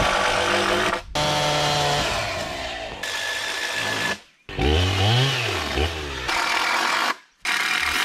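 Chainsaw engine in several short snatches cut together, revving up and back down, with sudden breaks between them.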